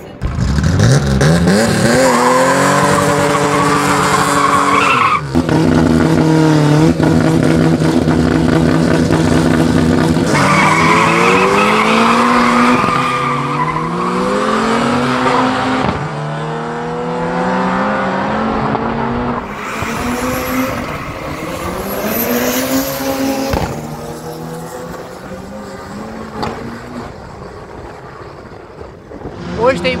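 Drag-race car engines at full throttle, their pitch climbing steeply through the gears in repeated rising sweeps that drop back at the shifts, about five and ten seconds in. A further run of climbing engine sweeps follows in the second half.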